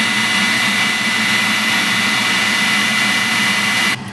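DeWalt heat gun blowing on high, a loud steady rush of air with a thin whine, heating Kroma Crackle paint on a metal piece. It cuts off suddenly just before the end.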